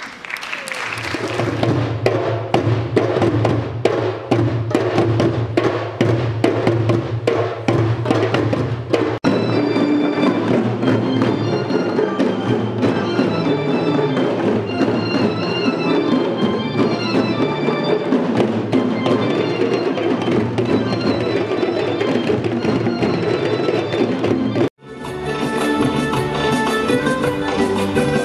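Percussion orchestra of drums played by a large troupe in a fast, dense rhythm. After about nine seconds, pitched melody notes come in over the drumming. About a second before the end the sound cuts off suddenly and different music begins.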